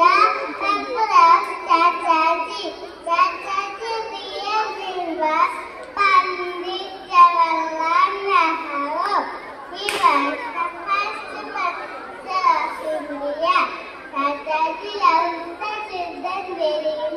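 Young children's voices talking, high-pitched and almost without pause.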